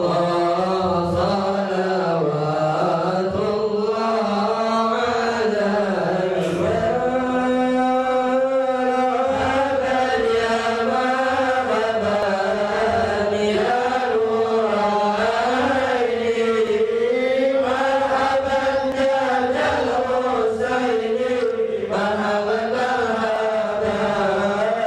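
Men's voices chanting a slow Islamic devotional song (sholawat) in a continuous melodic line of long held notes that rise and fall.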